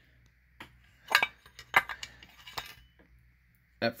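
A few short, light metallic clinks and knocks from a cast chainsaw housing being handled and turned over in the hand.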